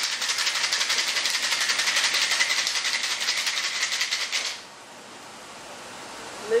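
Perlini carbonating cocktail shaker, charged with gas and holding ice and juice, shaken hard: a fast, even rattle of ice inside the sealed shaker that stops suddenly about four and a half seconds in.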